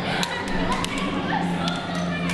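Plastic toy lightsaber blades clacking together in a mock sword fight: several sharp knocks at uneven intervals, over the chatter of people nearby.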